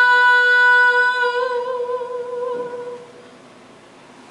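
A woman's solo voice holding the song's final note, steady at first, then wavering into vibrato about a second and a half in and fading out by about three seconds.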